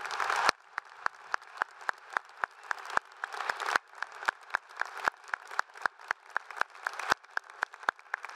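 Applause from a large crowd, dense at first, then dropping off suddenly about half a second in to scattered individual hand claps, a few each second, which continue over a faint background hiss.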